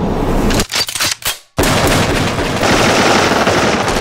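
Rapid automatic gunfire from a film soundtrack. A short burst and a few separate shots come first, then a brief gap about a second and a half in, then sustained firing.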